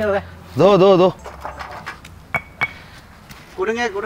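A voice speaking or calling out briefly, with a few light knocks and clinks in the pauses, and more speech starting near the end.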